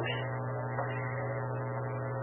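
Steady electrical hum with a buzzy stack of overtones, carried on an open radio transmission and heard through a receiver with a narrow, telephone-like bandwidth.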